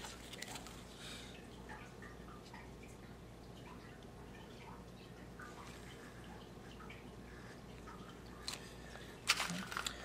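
Faint handling sounds from gloved hands working dissection pins and a probe in a metal dissecting pan: scattered light clicks and taps over a low steady hum, with a louder flurry of clicks near the end.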